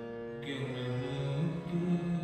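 Gurbani kirtan on harmonium: sustained reedy notes and chords, growing fuller about half a second in, with a melody line that climbs in pitch.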